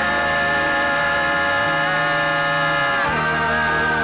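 Recorded gospel music holding a long sustained chord, which slides down into another held chord about three seconds in.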